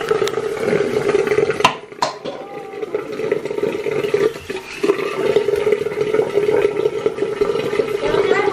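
Bathroom tap running steadily into a sink, with two sharp knocks about two seconds in.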